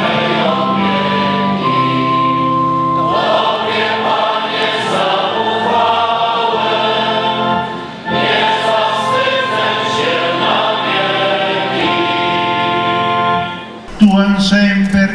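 A choir singing a slow sacred hymn in long held chords. The singing dips briefly about eight seconds in and fades out near the end.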